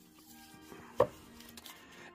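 One short, sharp tap about a second in, over faint, steady background music.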